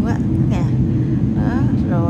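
Steady low rumble of a jet airliner's cabin in flight, the engine and airflow noise heard from a window seat.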